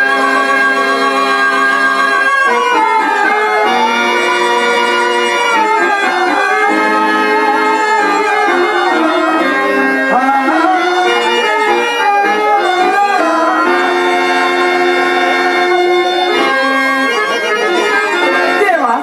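Instrumental accompaniment for a Telugu verse drama: a harmonium sounding sustained reed notes, joined by a wavering melody line, holding steady for the first couple of seconds and then moving through a flowing tune.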